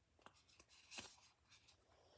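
Near silence, with a few faint rustles and soft clicks of hands rummaging among card dividers inside a cardboard box.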